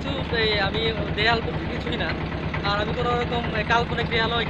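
A steady low drone from a small river boat's engine, with a man talking over it.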